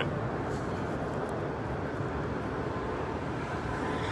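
Steady low background rumble of distant road traffic, an outdoor city hum.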